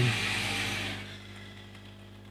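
Steady low electrical hum, with a soft hiss that fades away over the first second.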